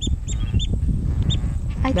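Waterbirds calling: short, high calls repeated quickly several times in the first second and once more a little later, over a steady low rumble. A voice comes in near the end.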